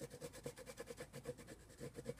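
A Jane Davenport Magic Wand coloured pencil scribbling quickly back and forth over a patch of dried, flat acrylic paint on paper: a faint, rapid run of many short strokes a second.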